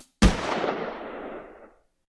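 A single gunshot sound effect: one sharp crack just after the music cuts off, with a long echoing tail that dies away over about a second and a half.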